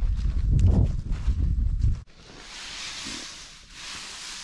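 Wind rumbling on the microphone for about two seconds, then cut off abruptly. A soft crisp rustle follows as a hand digs into a windrow of dry second-crop hay.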